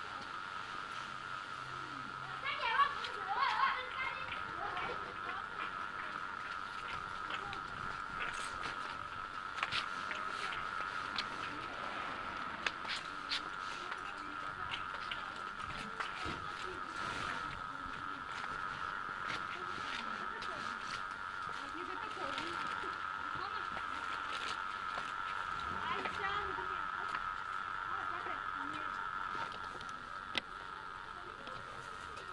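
Indistinct voices, louder about three seconds in, over a steady high-pitched hum, with scattered light clicks through the middle.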